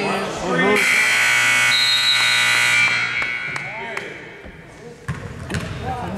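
Basketball scoreboard buzzer sounding once, a steady horn held for about two seconds before cutting off and ringing briefly in the gym.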